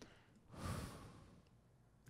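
A man's single sigh, a breathy exhale lasting under a second, starting about half a second in and fading away.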